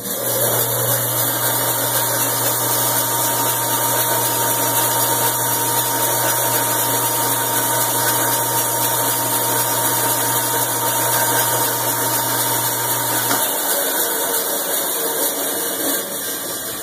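Forest 230 band saw with a 1.5 horsepower electric motor starting from its push button and running free with no cut: a steady whirr of wheels and blade over a low electric motor hum. About thirteen seconds in, the low hum drops out while the running noise carries on.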